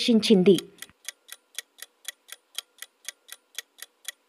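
Ticking countdown-timer sound effect, even sharp ticks at about four a second, starting about a second in.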